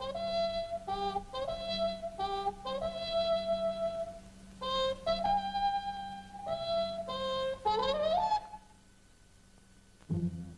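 Cartoon score with a solo wind instrument playing a short tune note by note, as the magpie's trumpet. The tune ends in a rising glide about eight seconds in, and after that only a low hum remains.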